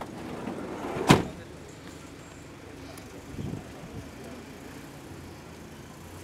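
A Toyota Noah minivan's sliding door slamming shut with one loud thump about a second in, then the van's engine running as it pulls away.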